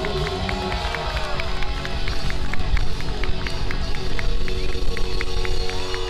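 Live blues-rock band: an electric guitar through Marshall amplifiers plays bent, sustained lead notes over a steady drum beat of about four strokes a second.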